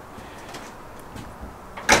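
12-volt RV refrigerator door being handled: a low steady background, then one sharp click near the end.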